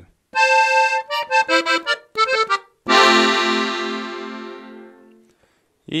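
Gabbanelli three-row button accordion in F (FBbEb) playing the closing phrase of a song. First comes a run of single notes with a quick trill. About three seconds in, a full final chord with a low note under it sounds and is held, fading out over about two seconds.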